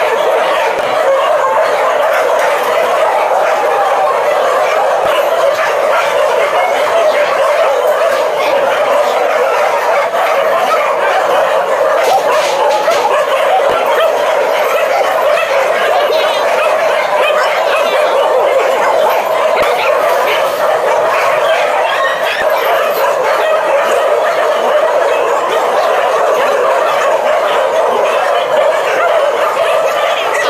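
A large pack of dogs barking all at once, a loud, dense chorus that never lets up. This is alarm barking set off by a stranger's arrival.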